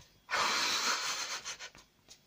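A woman's heavy breath close to the microphone, starting sharply just after the start and lasting about a second, followed by a few faint ticks. It is the laboured breathing of someone in bed struggling with severe leg pain and nausea.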